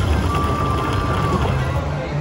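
Electronic sounds of a Tiki Fire video slot machine as its reels land and small line wins are shown: a click, then a single steady tone held for about a second, over the low hum of the casino.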